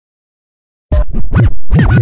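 Silence for about the first second, then DJ-style record scratching: a quick run of back-and-forth pitch swoops, cut up into short bursts, at the head of a screwed-and-chopped hip hop track.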